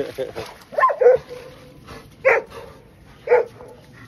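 A dog barking at play with other dogs: short single barks about a second apart.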